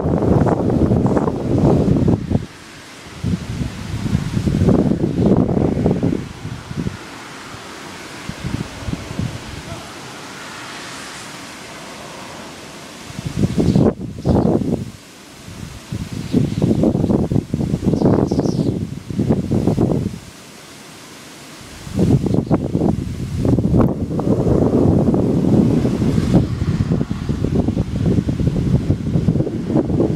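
Storm wind blowing on the microphone in uneven gusts a few seconds long, with quieter stretches of steady hiss between them.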